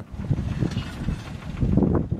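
Wind buffeting the microphone: an uneven low rumble that grows stronger near the end.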